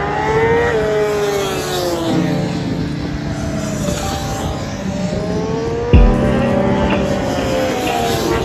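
Racing engines on a circuit, running hard as they pass, their pitch rising briefly, falling, then rising again. A single thump about six seconds in.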